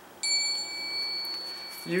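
A small bell struck once, ringing with a clear, high tone that slowly fades.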